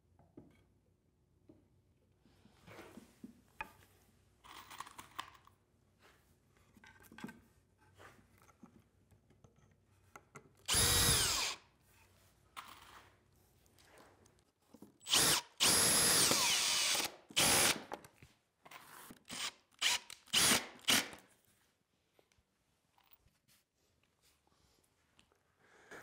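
Cordless drill-driver driving screws into the back of an ash bench's crest rail: several short runs of the motor, the first spinning up and levelling about eleven seconds in, the longest about a second and a half near the middle, then a few quick bursts. Faint knocks and handling of the wood come before.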